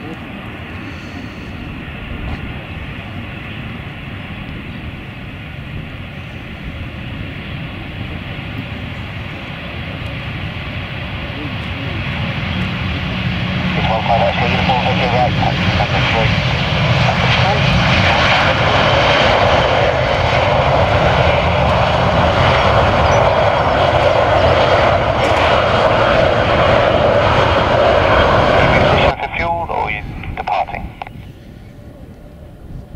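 Airbus A319 jet engines spooling up to take-off thrust on the take-off roll. The roar grows louder over the first dozen or so seconds, stays loud as the airliner passes close by, and cuts off suddenly near the end.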